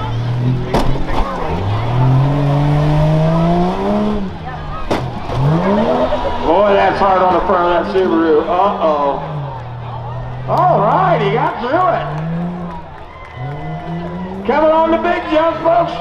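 Engine of a stock SUV rough truck revving hard in repeated surges as it is driven over the dirt-track jumps. The pitch climbs steadily for about three seconds, drops off, then rises and falls several more times.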